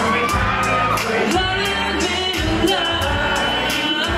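Male pop vocals sung live into microphones over a pop backing track with a steady beat and bass.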